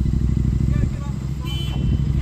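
Outdoor air-conditioning condenser unit running with a steady low hum, faint voices over it.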